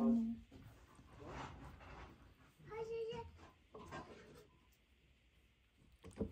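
A few short, indistinct bursts of voices in the room, one of them high-pitched like a child's.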